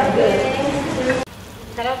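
Sliced onions sizzling in hot oil in a stainless steel frying pan as they are stirred with a spatula, being fried until crisp. The sizzle drops suddenly to a quieter level just past halfway.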